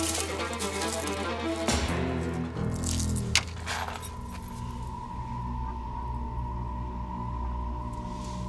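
Background music score with sustained low notes and a high held tone coming in about four seconds in; a sharp click cuts through about three and a half seconds in.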